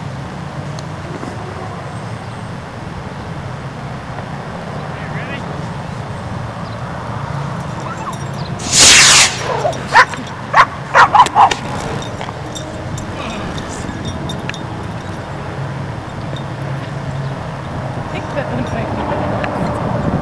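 A dog barks a handful of short, sharp times about halfway through, just after one loud, noisy burst. Steady wind noise on the microphone runs underneath.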